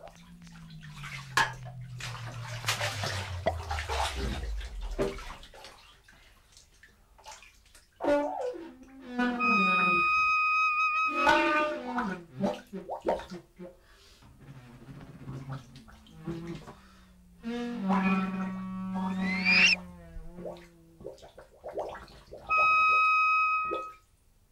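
Experimental free-improvisation sound collage mixing bath-water sounds with reed and brass notes. It opens with a low pitch sliding slowly down under hiss; a steady high tone sounds about ten seconds in, a pitch sweeps sharply upward a few seconds from the end, and a loud steady high tone comes in near the end and cuts off abruptly.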